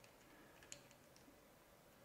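Near silence, with a faint small click about three-quarters of a second in and a few fainter ticks, from fingers turning down the tiny retaining screw that holds an M.2 SSD to its NVMe hat.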